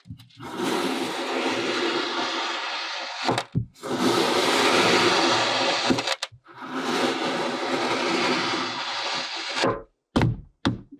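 Knife blade slicing slowly through a block of kinetic sand: three long gritty, crunching cuts of two to three seconds each, with a short pause between them.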